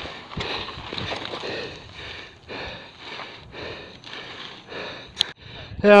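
A mountain biker's hard, rapid breathing close to a helmet-mounted camera's microphone after a crash, short rough breaths repeating about once or twice a second, with a sharp click near the end.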